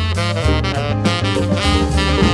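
Small jazz band playing swing, with saxophones carrying the melody in short, separate notes over a bass line.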